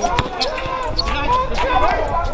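A basketball being dribbled hard on an outdoor court, a few sharp bounces, under the shouting of players.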